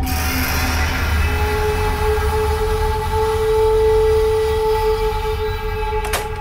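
Suspense drone from a TV thriller score: a continuous low rumble, joined about a second in by two held steady tones that hang unresolved.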